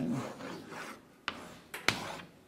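Chalk scratching on a blackboard as lines of a diagram are drawn, with a few sharp chalk strokes and taps in the second half, the loudest just before the end.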